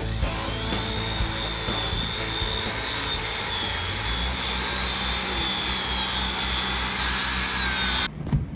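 Handheld angle grinder working on the steel girth weld of a large pipeline pipe: a steady high whine over a harsh grinding rasp that cuts off suddenly at the end. Background music plays beneath it.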